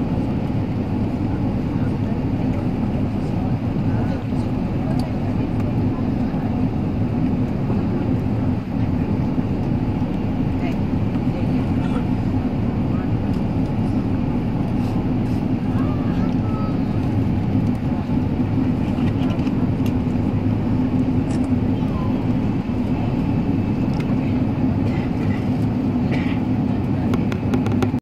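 Steady cabin noise of a four-engine jet airliner on approach: an even rumble of the engines and airflow, heard from a window seat.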